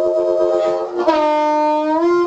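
Amplified blues harmonica played through a vintage Shure Brown Bullet microphone with a CR element: a held chord, then a little after a second a new note that is bent down in pitch and slowly eased back up.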